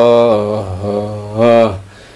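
A solo man chanting an Ethiopian Orthodox hymn in Ge'ez, unaccompanied, holding long notes that glide slowly in pitch. The voice fades out about a second and a half in, leaving a short pause for breath.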